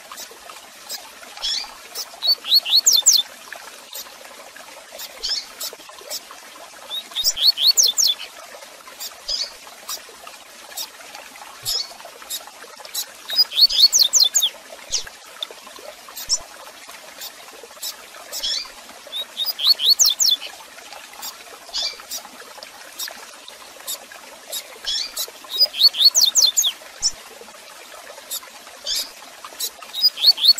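Double-collared seedeater (coleiro) singing its 'tui tui zel zel' song: a short burst of quick, sweeping high notes repeated about every six seconds, with brief chirps in between.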